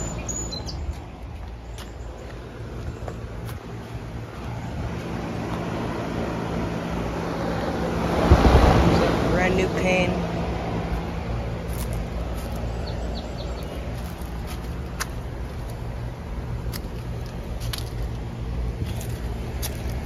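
Outdoor air-conditioner condensing unit, a Trane XR13 just switched on, running with a steady low hum. A louder rush of air swells about eight seconds in and fades over a couple of seconds.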